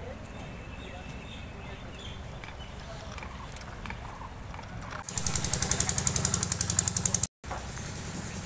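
A low steady rumble, then about two seconds of loud, rapid mechanical pulsing from a motor, roughly ten beats a second, which cuts off abruptly.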